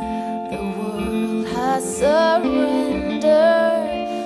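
A woman singing a slow song into a microphone over long held electric guitar notes, live on stage.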